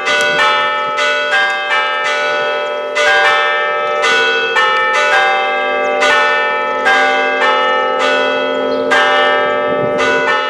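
Church bells ringing a peal: several bells of different pitch struck one after another, about two strokes a second, each ringing on into the next.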